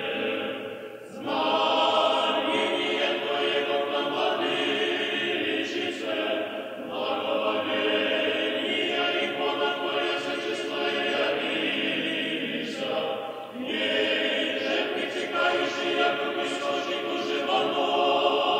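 Choir singing unaccompanied Russian Orthodox liturgical chant in sustained, full chords, in long phrases with short breaks between them.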